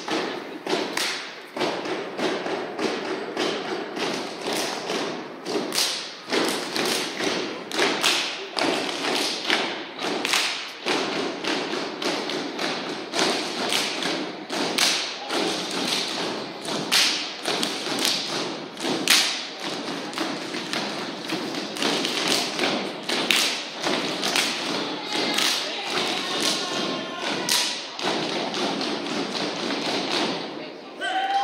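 Step-dance routine: performers stomping on a stage floor and clapping in rhythm, a steady run of sharp hits with no music behind them.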